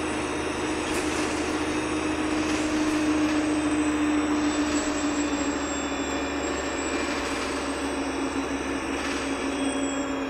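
Interior sound of a Wright Pulsar 2 single-deck bus on a VDL SB200 chassis under way: a steady engine and road drone with a humming tone that sinks slightly in pitch over the last few seconds.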